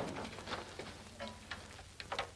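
Faint handling sounds as an acoustic guitar is picked up and handed over: a few soft, scattered knocks and rustles over the low hum of an old film soundtrack.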